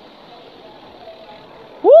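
Faint steady outdoor background noise, then near the end a person gives a loud, high-pitched vocal call that rises sharply in pitch.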